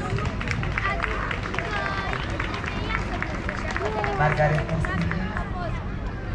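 Indistinct, unintelligible speech from a distant stage PA mixed with nearby voices, over a steady low hum.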